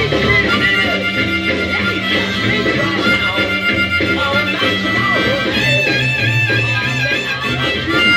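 Blues harmonica played over an R&B band backing, with bass line and drums underneath. In the second half the harmonica holds long, wavering notes.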